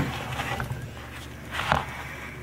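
Handling noise from a die-cast scale model paver: a sharp click at the start, faint rustling of fingers on the model, then a duller knock near the end as it is set down on the table.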